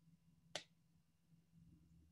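Near silence with a faint low hum, and a single sharp click about half a second in.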